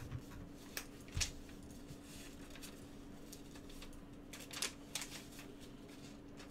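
A handful of light clicks from a computer mouse and keyboard, a couple about a second in and a couple more near the five-second mark, over a faint steady hum.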